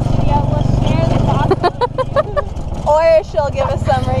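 Engine of an open-backed passenger vehicle running steadily while under way, a low, fast-pulsing drone, with people's voices over it and a short high-pitched voice about three seconds in.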